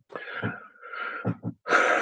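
A man's throat and breath noises with no words: a rough, cough-like sound, then a louder breathy one near the end.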